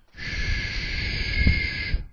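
A man's voice making one long, breathy hissing sound of almost two seconds with a thin whistle-like tone in it, a demonstration of one of the healing sounds of traditional Chinese medicine.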